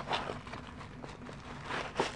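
Handling noise of a cardboard box and a plastic-wrapped phone holder bag being slid and pulled out: soft rustles and a few small knocks, with a sharper click at the start and another near the end.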